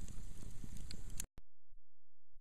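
Hot grease in an open pot over a fire, nearly finished boiling off its water, giving a few scattered pops and crackles over a steady hiss. It cuts off abruptly about a second in, leaving only a faint low hum.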